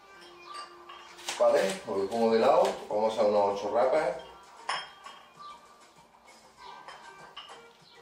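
Metal plates on hand-held dumbbells clinking and clanking as they are moved, loudest for about three seconds from a second in, with a voice sounding over them in the same stretch. Background music plays underneath throughout.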